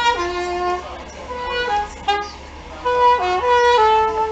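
Soprano saxophone playing a melody of held notes that step up and down in pitch, softer for a couple of seconds in the middle and louder again near the end.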